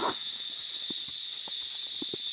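Steady high-pitched buzzing of insects, with light, irregular footsteps on a dirt path strewn with dry leaves.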